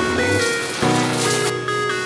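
Electronic background music with a steady melody over the hiss of water spraying from a shower head; the hiss stops about one and a half seconds in.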